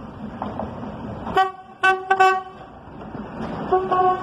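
Diesel railcar horn sounding several short toots about a second and a half in, then another starting near the end, over the rumble of the railcar approaching on the track.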